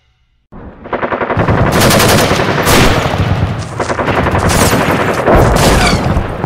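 Battle sound effects: rapid, sustained machine-gun fire mixed with gunshots, starting suddenly about half a second in, with a deeper boom coming in near the end.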